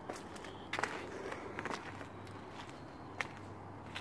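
Faint footsteps and a few light, scattered knocks and ticks of someone moving about among cardboard boxes, over a steady low hum.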